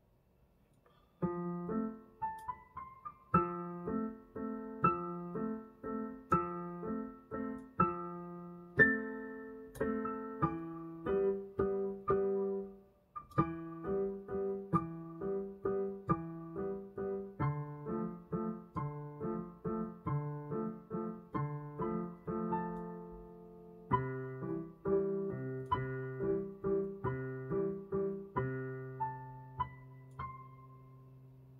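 Digital piano played by a beginner: a piece of chords and melody notes, each note struck and fading. It starts about a second in, breaks off briefly about halfway, and ends on a held chord.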